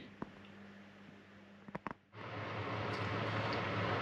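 A few faint clicks, then about halfway through a steady blowing noise with a low hum starts: an electric fan heater running.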